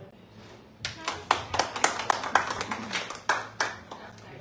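A small audience clapping briefly for about three seconds, starting about a second in. The claps are sharp and irregular.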